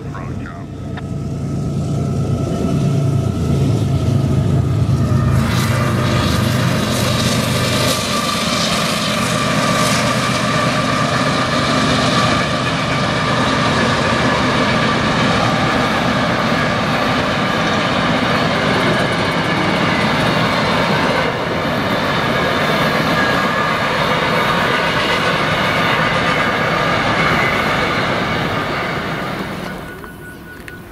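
A long freight train of loaded coal hopper cars rolling past: a steady rumble of wheels on rail with a few high ringing tones over it. A deep hum sits under it for the first several seconds.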